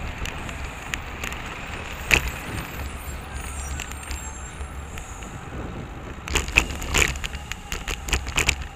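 Riding noise picked up by a bicycle-mounted camera in city traffic: a steady low rumble of road and wind, broken by sharp rattles and knocks. There is one loud knock about two seconds in and a cluster of them near the end.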